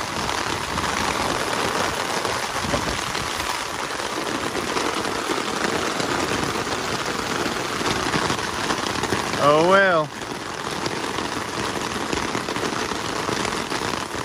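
Steady rain falling on an umbrella held overhead and on the van around it. About ten seconds in, a man's voice makes one short sound that rises and falls in pitch.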